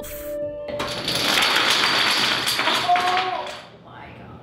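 Thousands of dominoes clattering down as a large, densely packed domino structure collapses: a dense rattle of small clicks that starts about a second in and dies away near the end.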